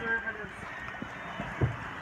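Wind buffeting a phone's microphone on a sailboat under way: a steady rushing noise, with a short low thump from a gust about one and a half seconds in.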